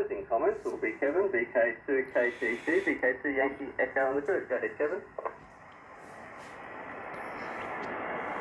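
Yaesu FRG-8800 communications receiver's speaker playing a ham radio operator talking in lower sideband on the 80-metre band, the voice thin and cut off above the mid-range. About five seconds in the voice stops, and band-noise hiss comes up and slowly grows louder.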